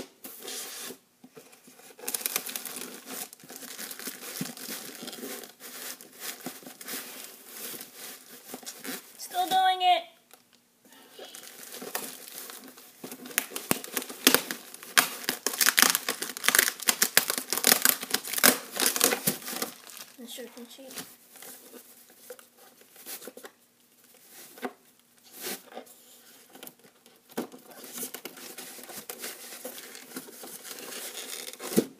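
Plastic packaging crinkling and tearing as parts of an RC plane kit are unpacked by hand. The rustling comes in irregular spells and is heaviest in the middle third.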